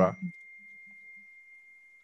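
A faint, steady, high-pitched pure tone held on one pitch for about two seconds, starting as a man's speech stops just after the beginning and cutting off as talk resumes.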